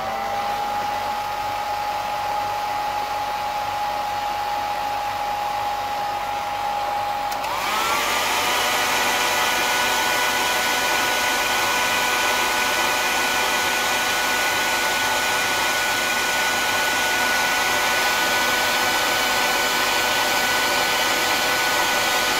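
Hair dryer running: its motor spins up to a steady whine of blowing air. About seven seconds in it is switched to a higher setting, and the whine jumps up in pitch and grows louder, then holds steady.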